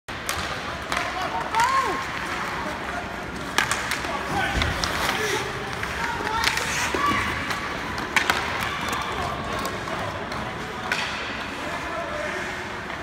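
Ice hockey play: scattered sharp clacks of sticks and puck, some against the boards, over a steady rink hubbub with indistinct shouts from players and spectators, one falling call about a second and a half in.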